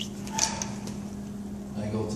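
Steady low hum in the room, with a short hiss about half a second in and a man's voice starting near the end.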